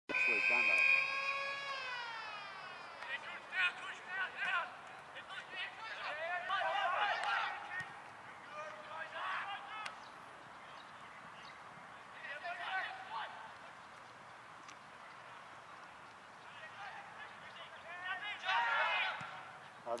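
A ground siren sounds loud and steady for a couple of seconds, then falls in pitch as it winds down, the usual signal to start the quarter. Voices then call out at intervals across the ground.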